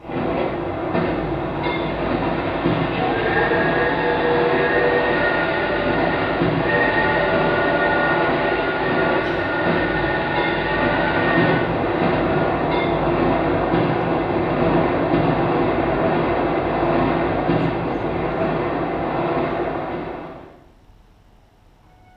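Sound effect of a train running, played loud: a steady rolling rail noise with some high wheel squeal. It starts suddenly and fades out about a second before the end.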